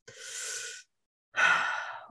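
A man breathing audibly into a close microphone: a soft breath, a short pause, then a louder sigh-like breath just before he speaks.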